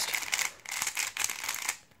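A plastic 3x3 speedcube being turned fast by hand, its layers clicking and rattling in quick runs. It is set to its tightest springs and tension.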